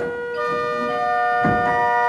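Small cabinet pipe organ played on its two-foot principal stop: bright, high sustained notes, with more notes added one after another and held as a steady chord.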